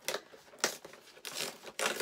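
Cardboard advent calendar door being torn open with paper crinkling: a few short rips, the loudest about two-thirds of a second in and near the end.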